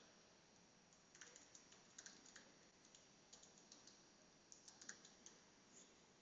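Faint typing on a computer keyboard: short runs of key clicks with pauses between them, starting about a second in.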